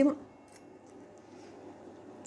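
A woman's voice trails off at the very start, then low, steady room noise with a single faint click about half a second in.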